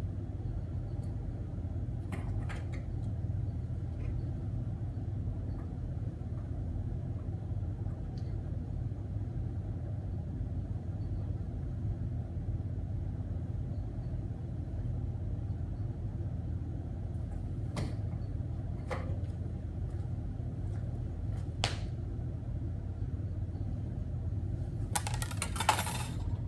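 Steady low room hum, with a few faint clicks along the way and a short burst of loud clattering about a second before the end.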